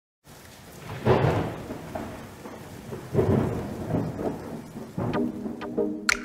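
Thunder rolling over steady rain, as the track's intro, with two big rumbles about one and three seconds in. Near the end a pitched instrument line and a few sharp percussive hits come in as the music starts.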